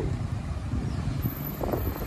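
Steady low rumble of street traffic, with wind buffeting the microphone.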